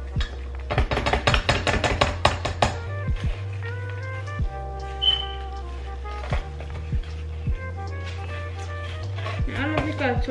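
A rapid flurry of knocks and scrapes from a silicone spatula mashing cream cheese into strawberries in a stainless steel bowl, about a second in and lasting around two seconds, with a few single knocks later. Background music with a steady bass plays throughout.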